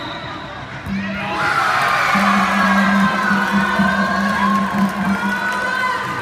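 Sideline crowd of adults and children cheering and shouting, swelling about a second and a half in and staying loud, over a low steady hum that cuts in and out.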